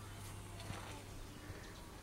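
Quiet outdoor background: a faint steady low hum with a light click or two, and no clear event.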